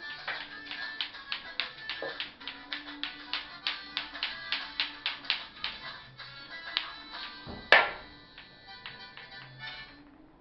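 Sharp plastic clicks in a quick, fairly steady run of about four a second, from a bate-bate clacker toy's balls knocking together, with faint music underneath. One much louder knock comes just before eight seconds in, and the clicks grow weaker after it.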